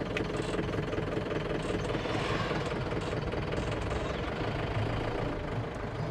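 Force Traveller van's diesel engine and road noise heard from inside the cab while driving, a steady drone.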